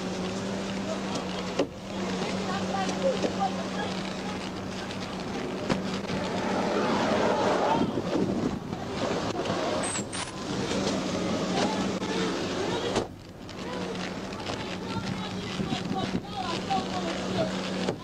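Police dash-camera audio: indistinct, muffled voices over a steady hum and wind and road noise.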